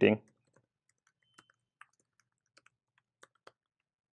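Faint typing on a computer keyboard: about ten separate keystrokes, irregularly spaced, as a short line is typed.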